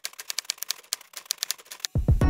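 Typewriter-style typing sound effect: a quick, uneven run of sharp key clicks, several a second, that stops near the end.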